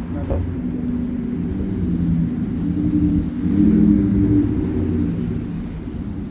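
Street traffic: a motor vehicle's engine hum swells, is loudest about four seconds in, then fades as it passes.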